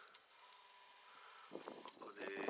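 Near silence: faint outdoor background with a faint steady tone and a few faint short sounds near the end.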